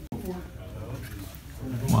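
Indistinct murmur of voices over a low steady background hum in a shop, cut by a very brief dropout just after the start; a man's voice comes in louder near the end.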